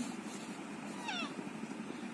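An electric fan running on low, a steady faint whir, with one short high-pitched cry falling in pitch about a second in.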